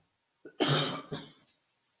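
A woman coughing to clear a frog in her throat: a short harsh burst about half a second in, followed by a smaller second push.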